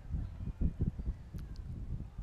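Wind buffeting an outdoor microphone, an irregular gusty low rumble, with a faint click about one and a half seconds in.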